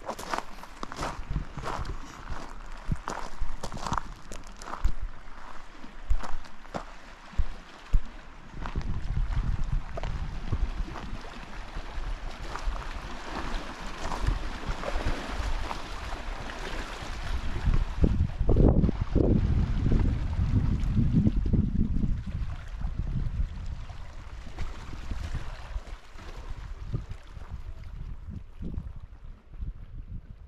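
Small waves lapping and splashing against a rocky lakeshore, with wind rumbling on the microphone, heaviest about two-thirds of the way through.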